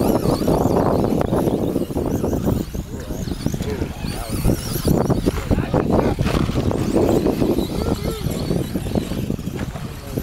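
Electric 2wd RC buggies racing on a dirt track, their motors whining up and down, with people talking nearby.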